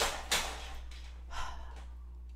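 A woman sighs: a long breathy exhale that starts about a third of a second in and trails away, with a softer breath a second later.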